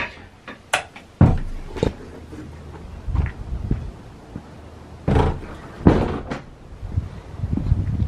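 A door being opened and closed, with irregular knocks, thumps and handling noise as the camera is carried through it.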